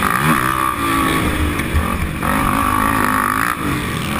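Sport quad (ATV) engine revving hard, heard from on board, its pitch climbing and dropping twice as the rider accelerates and backs off on a dirt track.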